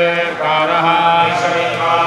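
Group of male priests chanting Vedic Sanskrit in ghana pātha recitation, syllables held on a few steady pitches that step up and down.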